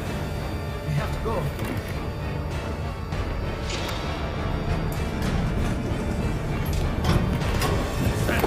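Tense film score: a steady low drone with a few scattered sharp hits.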